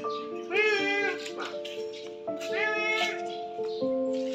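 Background music of held notes, with two drawn-out meow-like animal calls, each rising and then falling in pitch. The first comes about half a second in and the second about two and a half seconds in.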